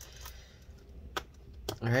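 Low steady hum with two short, sharp clicks about half a second apart, a little over a second in; a man's voice starts at the very end.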